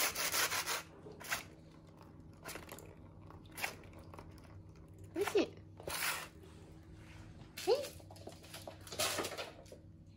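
Scratching and rubbing on a round corrugated-cardboard cat scratcher with balls in its circular track, in a series of short scrapes, the longest right at the start. A couple of brief squeaky sounds that bend in pitch come in around the middle.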